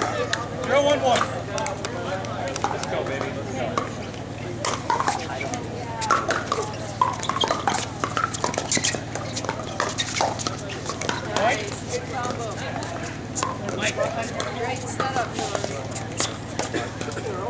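Sharp pops of pickleball paddles striking plastic balls, many at irregular intervals, over indistinct chatter of spectators and players and a steady low hum.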